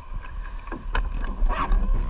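Water lapping and splashing against the side of a plastic surfski kayak, with a few short knocks, over a steady low rumble of wind on the camera microphone.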